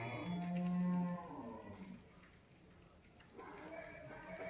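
A single long, low animal call at a steady pitch, lasting about a second and a half, right at the start.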